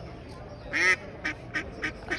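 Hen duck quacking: one loud, rasping quack just under a second in, then a quick run of short quacks. It is taken as a mother duck calling for her lost ducklings.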